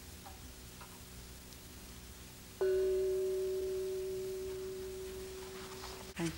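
A meditation bell struck once about two and a half seconds in, ringing a clear tone that slowly fades, closing a period of silent meditation. Before it, quiet room tone with a few faint ticks.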